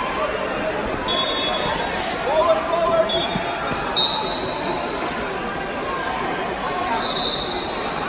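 Busy indoor gym crowd at a wrestling match: overlapping voices of spectators and coaches, with a drawn-out shout about two seconds in. A few short high squeaks cut through, with a thump about four seconds in.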